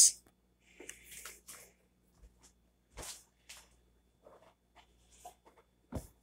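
Faint, scattered rustling and light knocks of a person moving about and handling things at a table, with a sharper knock midway and a short thump near the end as a hand comes down on the tabletop.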